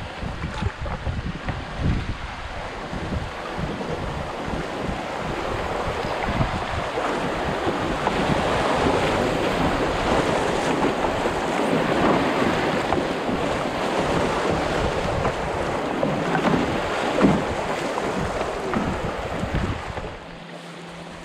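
Rushing, splashing water of a shallow river rapid around a canoe, growing louder over the first several seconds and then holding steady. Low rumbling wind buffeting on the microphone, mostly in the first half.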